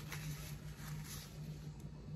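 Faint rustling of a paper towel handled around a glass jar, over a steady low hum in a quiet room.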